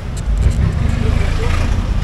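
Street traffic: a steady low rumble of vehicle engines close by, with faint voices in the background.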